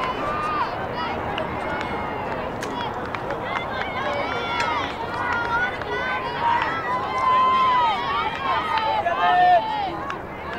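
Girls' and women's voices shouting and calling out across a lacrosse field, many of them overlapping, with no clear words. The calls grow louder in the second half, where one is held for about a second.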